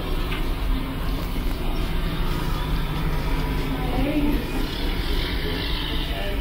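Steady low rumble of background noise with no distinct events.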